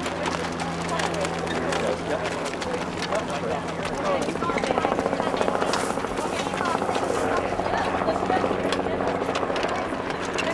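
Indistinct background voices with no clear words, over a steady low hum that fades out about two and a half seconds in.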